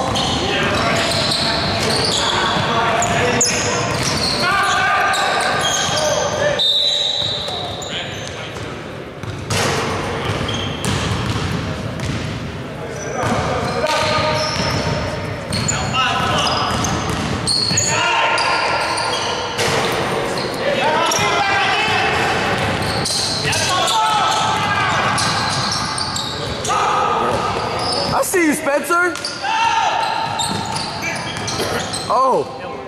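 Basketball game in a gym: a ball bouncing on the hardwood court among indistinct voices of players and onlookers, all echoing in the hall. A flurry of sharp sneaker squeaks comes near the end.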